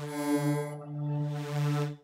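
Helium software synthesizer holding one sustained note of an evolving layered patch with a pad added. It stays on one steady pitch, swells, dips just before a second and swells again, its bright upper tones thinning as the blend shifts, then cuts off sharply at the end.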